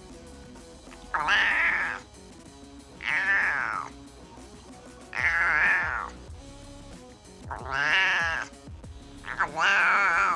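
Domestic cat meowing loudly and repeatedly: five long meows, each just under a second, about two seconds apart.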